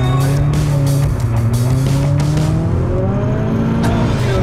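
Subaru BRZ's flat-four engine heard from inside the cabin under acceleration, its pitch rising steadily from about a second in and dropping back near the end.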